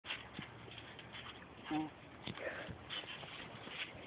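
Two people wrestling on a trampoline mat: scuffling with scattered soft knocks of bodies moving on the mat, and a short grunted "mm-hmm" under two seconds in.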